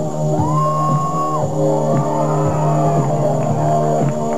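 Live band music, with a held chord under a lead line that slides up, holds, then drops, and short hits about once a second.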